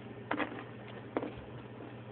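Someone biting and chewing a candy-coated peanut M&M: two short faint crunches, one about a third of a second in and a sharper click just after a second in, over a low steady hum.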